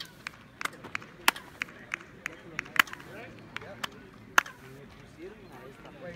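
Sharp single hand claps, about three a second for the first four and a half seconds, then one more after a gap, struck in front of the stone staircase of El Castillo pyramid, where clapping draws a chirping echo off the steps.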